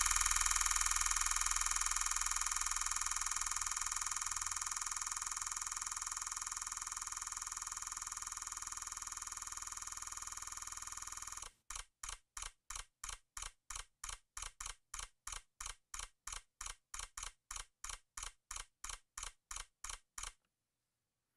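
Sony A9 firing a continuous 20-frames-per-second raw burst. The shutter sounds come so fast they run together into one steady, slowly fading buzz for about eleven and a half seconds. Then the buffer fills and the burst slows to separate clicks about three a second.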